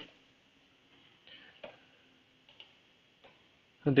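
A few faint, widely spaced clicks from computer input at the desk, with quiet room tone between them.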